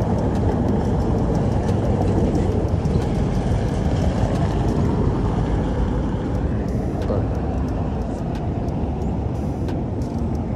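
Steady low rumble of outdoor street background noise.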